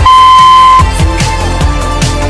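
A single high electronic beep from an interval timer, held for just under a second, signalling the start of a work interval. Under it runs background music with a steady beat.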